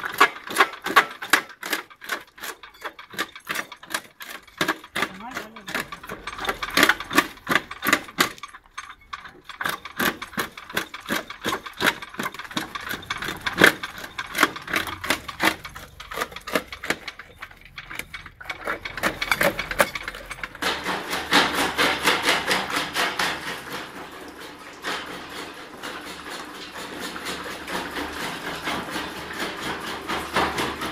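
Small electric jaw crusher crushing stone: its swinging jaw knocks and cracks the rock in a fast regular beat, about four strokes a second. About two-thirds of the way through, the sound changes to a denser, steadier clatter of crushing.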